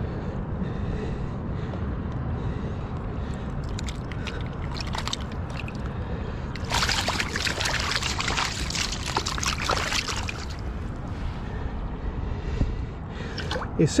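Shallow river water running over stones, with scattered small clicks and then a few seconds of splashing and sloshing at the water's edge, from about seven to ten seconds in.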